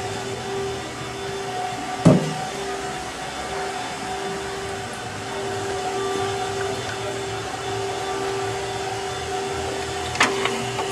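A steady mechanical hum with a held mid-low tone, a motor or air-handling machine running without change. One sharp knock about two seconds in.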